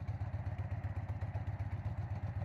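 Harley-Davidson V-twin motorcycle engine running steadily while riding along, a low, evenly pulsing engine note.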